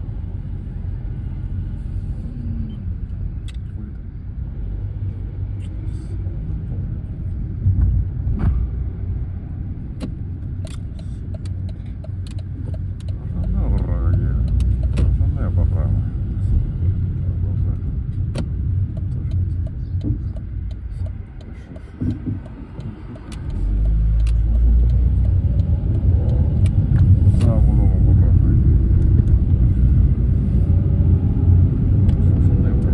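Road and engine rumble inside a moving car's cabin, steady and low, getting louder about halfway through and again near the end, with scattered light ticks.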